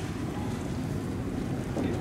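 Wind buffeting the microphone outdoors: a steady low rumble with no sharp bangs or shots.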